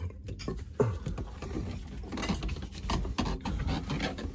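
Footsteps and rustling from a phone held in the hand while walking: a steady run of irregular scuffs and knocks.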